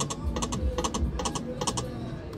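Video slot machine's reel-stop sound effects: a quick series of short, sharp clicks, about two a second, as the spinning reels land one after another.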